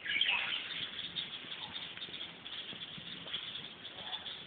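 A flock of small birds chirping in the trees, a dense continuous chatter with a louder run of calls just after the start.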